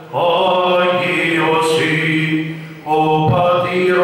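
Male voice chanting Greek Orthodox Byzantine chant in long, held notes, with a brief pause for breath near three seconds in.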